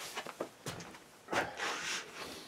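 Movement noise from a person stepping up and sitting down: a few short knocks and scuffs, then a longer rustle of clothing and wood starting a little past halfway.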